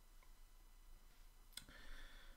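Near silence, then about one and a half seconds in a single click and the faint squeak of a felt-tip marker starting to write on paper.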